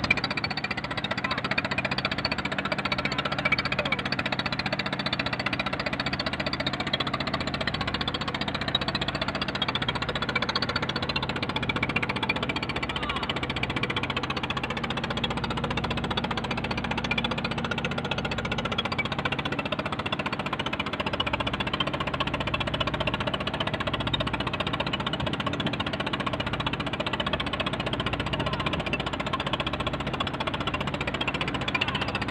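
A fishing boat's engine running steadily as the boat travels under way, a constant drone from start to end.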